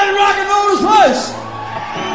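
A male rock singer's long held yell through a live PA, ending in a falling swoop about a second in; then a low sustained note from the band comes in.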